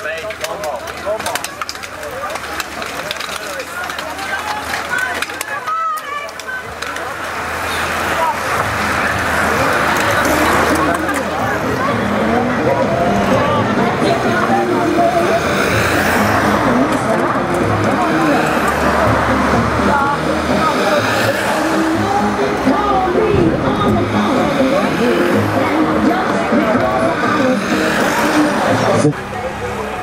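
Spectators talking as a bunch of racing cyclists rolls off the start, then race-following cars driving past close by, louder from about eight seconds in.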